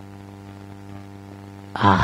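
Steady low electrical hum with a faint buzzy edge, heard through a pause in the talk. A voice begins again just before the end.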